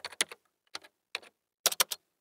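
Computer keyboard typing: a run of irregular key clicks, sparse at first, then a quick flurry near the end.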